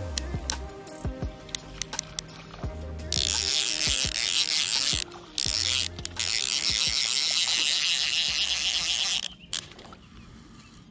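Background music over a fly reel's click-pawl drag, which sends out a dense, fast ratcheting buzz from about three seconds in, broken twice briefly, while a hooked bluegill is played; music and buzz both cut off abruptly near the end.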